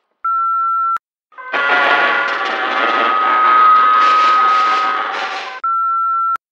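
Two short, steady voicemail beeps, one just after the start and one near the end. Between them comes a loud, heavily distorted, noisy sound lasting about four seconds, with a steady tone running through it.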